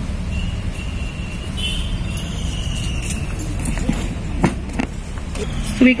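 Steady low background rumble in the open air, with a faint high-pitched whine for the first few seconds and a few sharp clicks near the end. A woman's amplified voice starts just as it ends.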